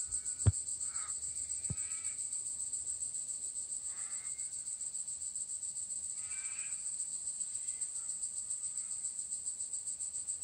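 A steady, high-pitched, finely pulsing insect trill, with a few faint short pitched calls over it.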